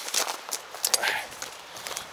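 Footsteps on dry, stony ground strewn with burned reed stalks: a few short crunching crackles.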